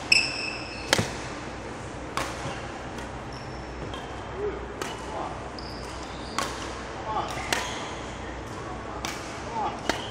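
Badminton rally: shuttlecocks struck back and forth by rackets, a sharp hit every second or two, with short squeaks of court shoes on a wooden hall floor.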